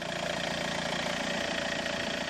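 Volkswagen Caddy van's engine idling steadily, an even running hum.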